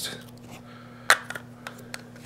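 Brush-cap super glue bottle being handled and closed: one sharp plastic click about a second in, then a few faint ticks, over a faint steady hum.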